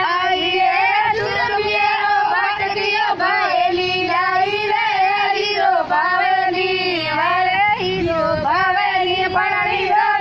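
High-pitched voices singing a song without a break, the melody wavering over a steady held note.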